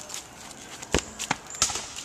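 A few sharp knocks and thumps: a soccer ball being kicked and footsteps on dirt, the loudest knock about a second in.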